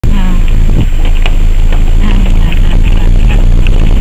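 Loud, steady low rumble of a vehicle moving along a gravel mountain road.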